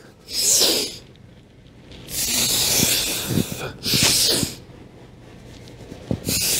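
A man's forceful breathing while holding a plank under load: a short rush of breath, then a long one about two seconds in, then another short one.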